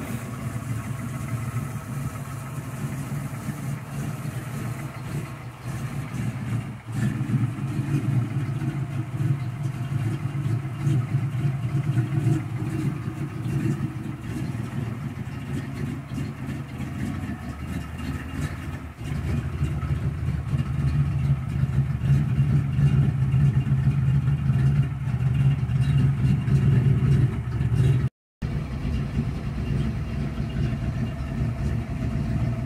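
Lifted Ford Ranger pickup's engine idling steadily, with a low, even hum. It gets louder about two-thirds of the way through.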